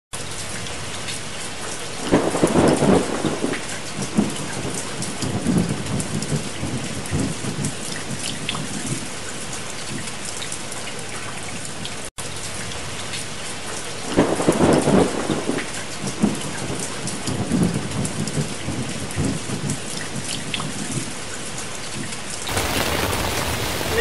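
Steady rain falling on the campsite and the tent fly, with thunder rolling loudly about two seconds in and again about fourteen seconds in, and smaller rumbles between.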